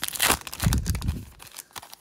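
A foil trading-card pack wrapper being torn open by hand, with crinkling of the foil; the crackle is densest in the first second and a half and thins out near the end.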